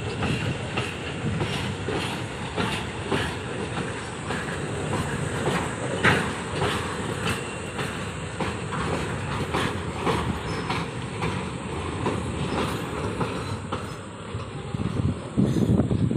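Container freight train of flat wagons rolling past at close range: a steady rumble of steel wheels on rail, with a dense run of clicks and knocks as the wheels cross the rail joints. One knock about six seconds in is sharper than the rest.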